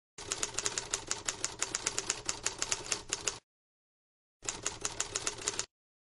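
Typewriter keys clacking in quick succession, about seven strikes a second, in two runs: about three seconds of typing, a one-second pause, then a shorter run. Both runs start and stop abruptly, like a sound effect laid under text being typed onto the screen.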